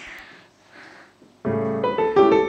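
Recorded piano accompaniment for a ballet exercise starts about one and a half seconds in, entering with full chords; before it there are only faint soft rustles.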